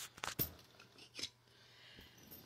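A few short, sharp clicks and light rustling: handling noise from the camera being swung over the toy layout.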